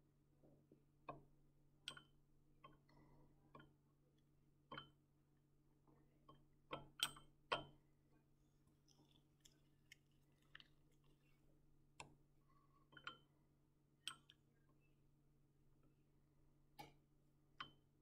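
Mostly near silence over a faint steady hum, broken by a dozen or so small, sharp clicks and taps from handling a glass volumetric pipette in a beaker while it is filled with solution; the loudest few come about seven seconds in.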